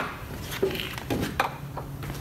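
Two sharp clicks and small knocks from handling around the car's open door, with faint mumbled speech. A low steady hum comes in about a second in.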